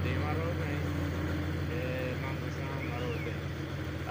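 Heavy dump truck's diesel engine droning steadily and low as the truck wades through deep floodwater, with faint voices of onlookers over it.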